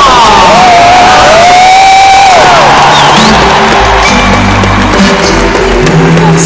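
Live band music with a large crowd cheering over it. A long held high note sounds in the first two seconds or so, rising and then falling at its end.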